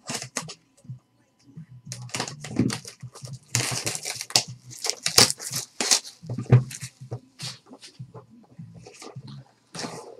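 Plastic shrink wrap being torn and crinkled off a cardboard trading-card box: a run of crackling rustles, loudest in the middle.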